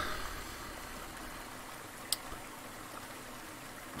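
Faint, steady rushing of a mountain stream flowing over rocks, with one sharp click about two seconds in.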